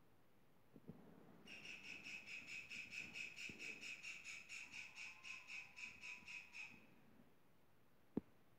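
Faint, high-pitched chirping repeated evenly at about four chirps a second. It starts about a second and a half in and stops shortly before the end.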